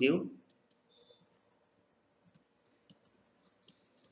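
Faint, scattered clicks and taps of a stylus on a writing tablet as words are handwritten, a few isolated ticks spread over the seconds.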